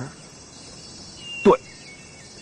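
A steady high-pitched insect chorus in outdoor ambience, with one short vocal sound from a person about one and a half seconds in.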